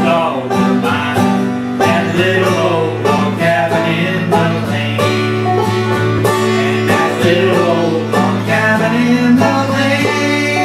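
Acoustic guitar and banjo playing a bluegrass tune together, plucked and strummed at a steady tempo.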